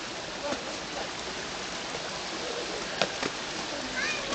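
Steady rushing hiss of Lower Yosemite Fall's falling water. Faint voices come and go, and there is a single sharp click about three seconds in.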